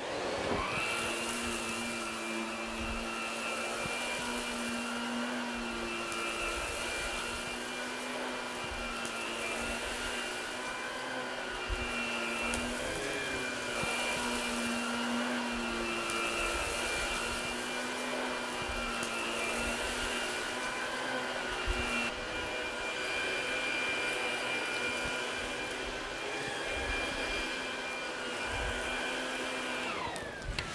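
ProTeam upright commercial vacuum cleaner running steadily with a high motor whine as it is pushed back and forth, pre-vacuuming a soiled carpet.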